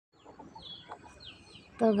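Birds calling faintly in the background: repeated short chirps that fall in pitch.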